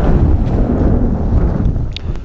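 Wind buffeting the microphone: a loud, uneven low rumble that swells and dips in gusts.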